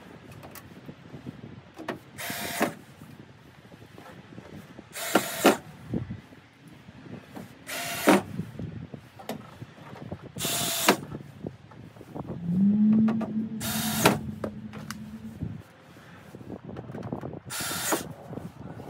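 Cordless drill run in short bursts of about half a second, six times at intervals of roughly three seconds, driving fasteners inside a truck door. From about two-thirds of the way through, a motor hums steadily for about three seconds, its pitch rising briefly as it starts.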